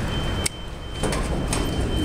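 An elevator hall call button, an Otis Series 1 up button, pressed with a single sharp click about half a second in, over a steady low rumble and a faint high-pitched whine.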